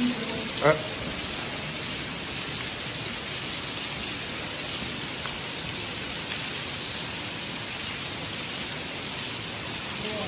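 Steady hiss of water falling down a tunnel ventilation shaft and spattering on the ground below, like heavy rain. A brief, loud, pitched sound stands out less than a second in.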